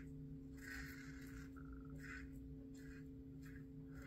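A few short, faint scrapes of a Merkur 34C double-edge safety razor shaving the upper lip, over a steady low hum.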